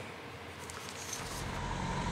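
Low rumble of road traffic fading in about a second in, with a faint steady tone over it.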